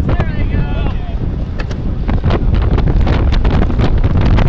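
Wind buffeting the microphone of a Cycliq bike-mounted camera while the cyclist rides at speed in a race pack. Riders' voices come through in the first second, and scattered knocks follow.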